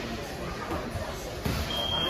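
Gym round timer starting a steady high beep near the end, signalling the end of the sparring round, over low gym noise and faint voices.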